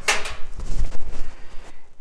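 Hand-handling noise inside a gas oven's sheet-metal cavity while wires are unplugged: a sharp click at the start, then uneven rustling and scraping with a dull knock about a second in.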